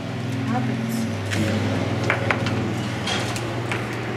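Indistinct voices talking quietly over a steady low hum, with a few faint clicks.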